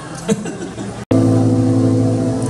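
A live band's sustained keyboard chord comes in abruptly after a split-second dropout about a second in, several low notes held steady as a song begins; before it there is faint stage chatter.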